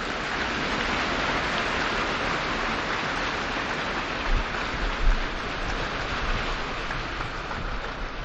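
A large audience applauding steadily, the clapping easing slightly near the end.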